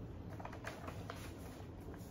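Faint, irregular light clicks and taps, a few a second, over a low steady room hum.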